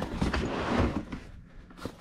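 A small padded mailer being pulled out of a plastic storage bin: a few knocks, then about a second of rustling and scraping that fades out.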